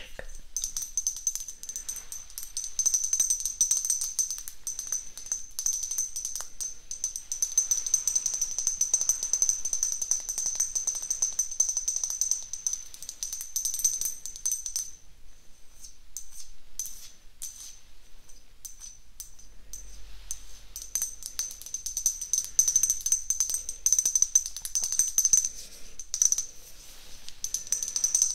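Long fingernails tapping and scratching on a bottle-shaped light-up ornament, a quick, irregular run of small clicks. A steady high-pitched tone sounds beneath the tapping.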